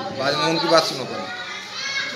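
A man speaking through a microphone for about a second, then a pause in which quieter voices from the seated crowd, children among them, are heard.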